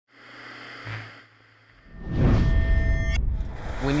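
Old CRT television hissing with static over a low hum. About two seconds in, a loud rising rush of noise with a few steady high tones comes in and cuts off suddenly after about a second.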